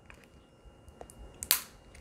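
Faint handling sounds of small objects, with one sharp click about one and a half seconds in.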